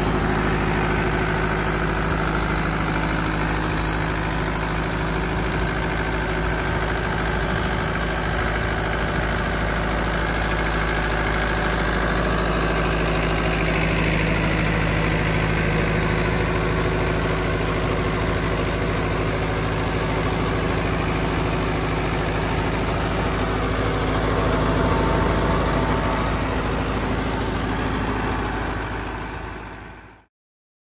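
Mahindra Yuvo 585 DI tractor's diesel engine working steadily under load as it drives an 8 ft rotavator set to full depth, with the rotavator churning soil. The sound fades out near the end.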